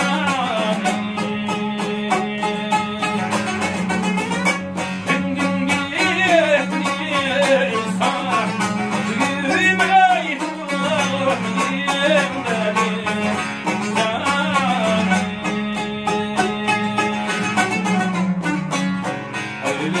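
Uyghur tembur and dutar, two long-necked plucked lutes, playing a folk melody together, with a man's voice singing over them at times. A steady low note runs under the playing.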